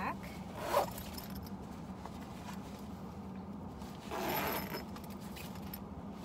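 Zipper on a Herschel mini backpack being pulled shut in two short runs, a brief one about a second in and a longer one at about four seconds, over a steady low hum.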